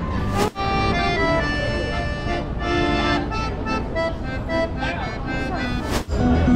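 Piano accordion played by a street musician: held chords with a melody of sustained reedy notes, after a brief drop in sound about half a second in.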